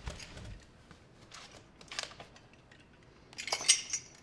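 Metal chain and wrist cuffs clinking and rattling in several short bursts as the hands move, the loudest jingle coming near the end.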